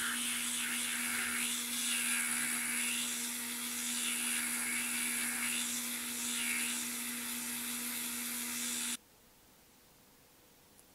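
Handheld Dremel rotary tool running at a steady high speed, its sanding band grinding down a small cotter pin: a constant motor whine with a hiss of abrasion. It cuts off suddenly about nine seconds in.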